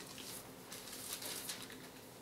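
Bible pages being turned by hand: a few soft, brief papery rustles over a quiet room.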